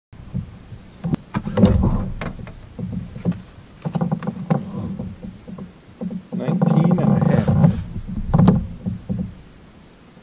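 Irregular knocks, thumps and scrapes of a fish and gear being handled in a plastic fishing kayak, with a short muffled voice twice. A steady insect buzz runs high above.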